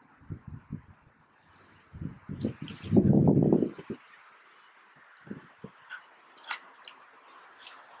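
Plastic water bottle being filled by dipping it in a pond: water gurgling into the bottle as air bubbles out, loudest about three seconds in, followed by a few small clicks and splashes.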